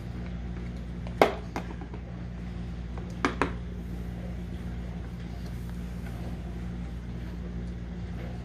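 Sharp knocks on a plastic high-chair tray: one loud one about a second in, then a quick pair about three seconds in, over a steady low hum.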